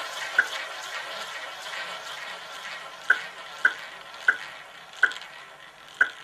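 Roulette ball rolling fast around the track of a spinning roulette wheel, a steady whirring that slowly fades as the ball loses speed. Sharp clicks come at lengthening intervals in the second half.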